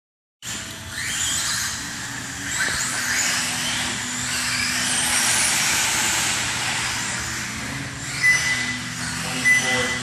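Electric radio-controlled off-road buggies running on an indoor dirt track: motor whine rising and falling in pitch with the throttle, over a steady low hum. Two sharp knocks near the end.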